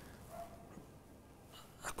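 Quiet pause in a man's speech: faint room tone, with his voice resuming right at the end.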